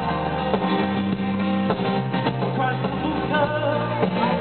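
Live rock band playing, with electric guitars and a drum kit, recorded from the audience.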